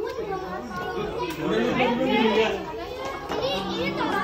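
Children and adults chattering and talking over one another in a room, with no single voice standing out.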